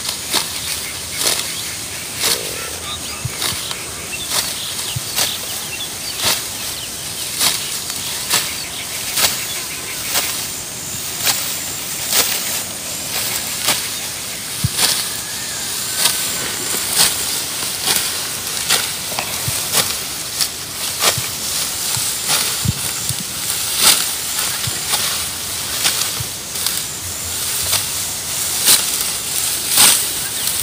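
Ripe rice stalks being cut by hand and rustling, close by: repeated short crisp cuts, about one or two a second, over a steady rustling hiss.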